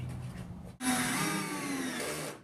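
A faint low hum, then, just under a second in, a cordless drill-driver starts and runs steadily, driving a screw into the shelter's OSB end panel.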